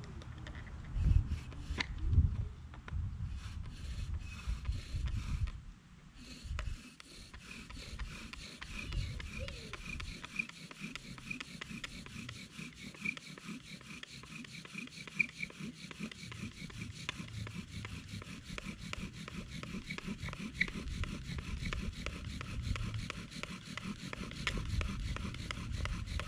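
Wooden bow drill being worked to start a fire: the spindle rubbing back and forth against a wooden fireboard in steady, rapid strokes with a faint squeak. A couple of loud wooden knocks come in the first few seconds as it is set up.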